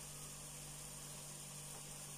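Faint steady hiss with a low, even hum: quiet kitchen room tone with no distinct event.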